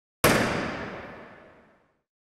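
Outro sting: one sudden impact-like hit sound effect, about a quarter second in, that fades away over about a second and a half.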